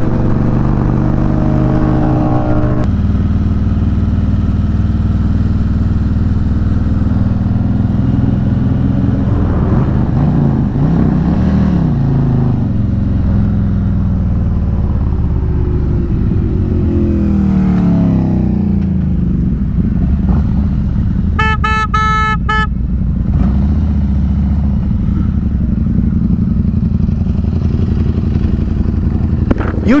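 Harley-Davidson Electra Glide's V-twin engine running at road speed, its pitch falling and rising as the throttle changes. About two-thirds of the way through, a horn sounds once for about a second and a half.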